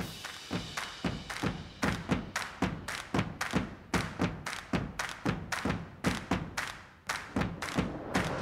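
Intro music built on heavy percussive hits in a fast, driving rhythm, about three a second, starting abruptly from silence.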